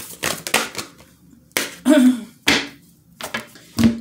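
Hand shuffling and drawing from a deck of oracle cards. A quick run of papery card clicks comes first, then a few separate louder card snaps.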